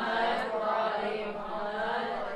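A voice chanting in long, drawn-out melodic tones, fading out near the end.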